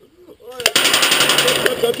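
A sustained full-auto burst from a G&G CM18 MOD1 airsoft electric rifle, heard as a fast, even stream of clicks that starts about half a second in, with the BBs striking the can at the target and knocking it off.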